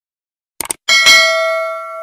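Subscribe-button animation sound effect: a quick double mouse click about two-thirds of a second in, then a notification-bell ding that rings on and fades away.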